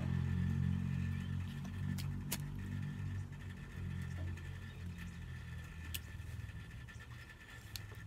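Low steady rumble of a car engine running nearby, slowly fading toward the end. A few faint sharp clicks come as a corncob pipe is relit with a lighter.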